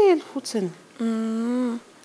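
A woman's voice: a short syllable with falling pitch, then about a second in a steady hum held for under a second, like an "mmm".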